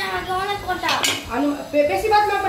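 Stainless steel tableware clattering, with a sharp metallic clink about a second in, as a steel plate is handled at the table.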